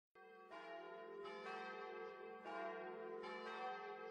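Church bells ringing faintly, a new strike about once a second, each ringing on under the next.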